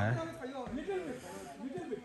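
A man's speech breaks off at the start, followed by faint, distant voices of other people talking over a light hiss of outdoor background noise.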